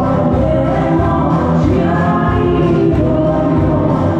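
A crowd of voices singing together over loud amplified music with a steady beat.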